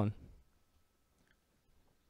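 A man's voice ends a spoken question, followed by near silence with a few faint clicks.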